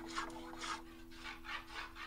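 A hand tool scraping along the edge of a thin wooden strip, in short repeated strokes about two a second, as the strip is shaped to its curve.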